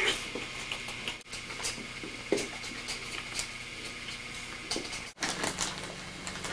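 Faint room noise and tape hiss with a few light, scattered knocks and clicks. The sound drops out for an instant twice, a little after one second and about five seconds in.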